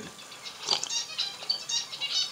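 A person sipping a drink from a mug: a string of short, soft, irregular slurping noises, starting about half a second in.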